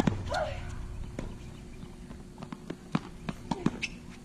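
Sharp knocks of a tennis ball and players' footsteps on an outdoor hard court, scattered at first and then coming quickly, about three a second, in the last second and a half. A thump with a short low rumble opens it, followed by a brief higher-pitched sound.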